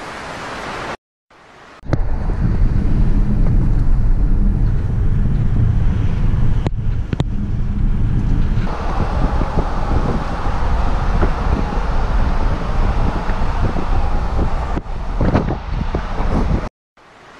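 Car driving at speed: steady low road rumble and wind noise, with wind buffeting the camera's microphone. The hiss grows brighter about halfway through.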